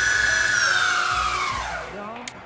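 Electric skateboard's drive motors spinning the off-road wheels with no load, a high whine that holds steady, then falls in pitch as they slow and fades out near the end.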